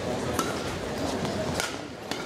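Badminton shuttlecock struck by rackets twice during a rally, sharp hits a little over a second apart, over steady crowd noise in an indoor hall.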